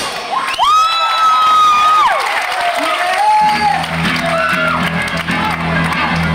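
A crowd cheering between songs, with one long high whoop that rises, holds for over a second and falls away. About three and a half seconds in, the electric guitars and bass come back in with a held low note.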